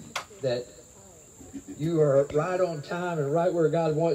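A man speaking into a microphone, with a steady high-pitched chirring of insects behind his voice throughout.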